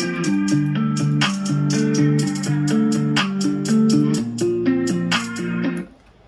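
A guitar loop of picked chords playing back with a hi-hat pattern ticking over it; the playback stops just before the end.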